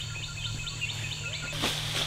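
Short, high chirping calls from a forest animal, repeated about five times a second over a low steady hum. At about one and a half seconds the chirps give way to a hiss and a single thud of a footstep.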